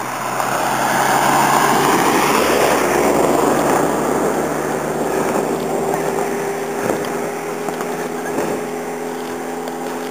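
Road traffic: a vehicle passing close by, loudest a second or two in and fading by about four seconds, followed by a steady engine hum as another car comes along the road.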